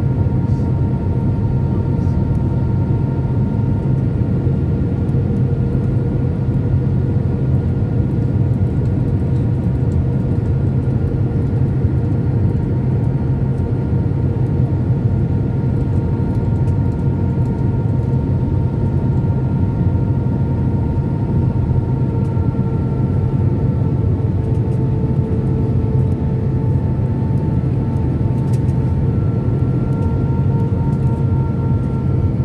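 Airbus A319 cabin noise heard from a window seat over the wing during the landing approach with flaps extended: a steady roar of engines and airflow, with a few faint steady whining tones that dip slightly in pitch about two-thirds of the way through.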